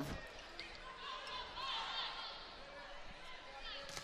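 Volleyball rally heard faintly on the court: the ball being struck, with short high squeaks of players' shoes on the hardwood floor over a low arena crowd.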